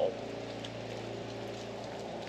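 A machine running steadily nearby: a low, even hum with several steady tones over a faint hiss.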